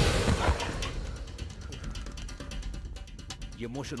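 Film soundtrack of a fight scene: the loud tail of an impact and the background score die down over the first two seconds. A run of light mechanical clicks follows, and a man's voice starts near the end.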